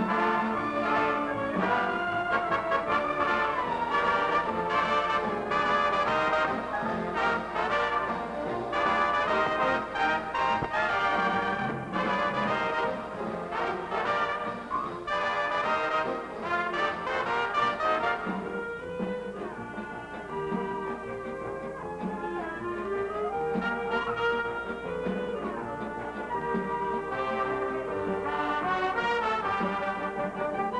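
Brass-led orchestra playing dance music. It drops to a softer passage a little past the middle, then builds again near the end.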